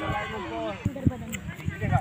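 Several men's voices calling out across an outdoor football pitch, with a couple of short sharp knocks about a second in.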